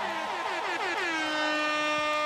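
Air horn sound effect: a quick run of short blasts, each dropping in pitch, then one long steady blast from about a second in.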